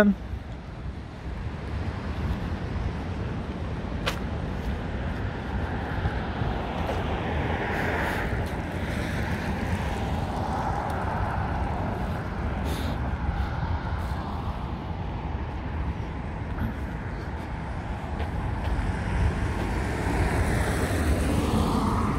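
Road traffic on a multi-lane road: a steady rumble of tyres and engines, with vehicles swelling past between about seven and eleven seconds in and again near the end.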